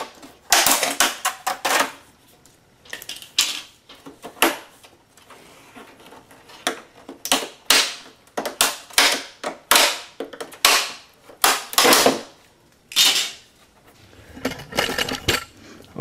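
Plastic bezel strip of an LCD TV's LED backlight panel being pried off by hand, its clips and edges snapping and cracking in irregular runs of sharp snaps with short pauses between.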